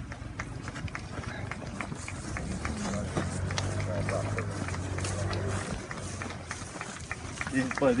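People's voices talking, with many scattered sharp clicks and taps throughout, and a low steady hum for a couple of seconds in the middle.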